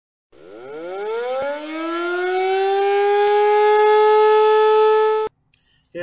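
A siren-like sound effect: one rich tone winds up in pitch over about two seconds, like a siren spinning up, then holds steady and cuts off suddenly about five seconds in.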